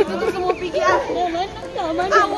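Several children's voices talking and calling over one another, with other voices of people on the walkway behind.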